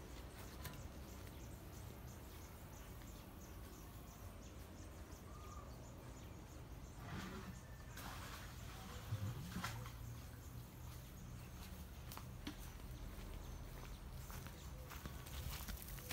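Faint outdoor ambience: steady low background noise with a few soft clicks and rustles, and one short faint chirp about five and a half seconds in.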